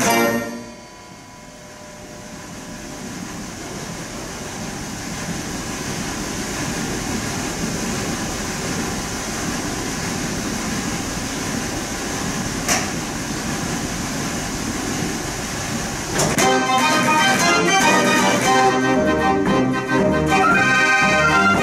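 Theo Mortier dance organ: a tune ends right at the start, and about fifteen seconds of steady, wordless background noise follow. About sixteen seconds in, the organ strikes up the next tune, with a strong beat and brass-like pipe voices.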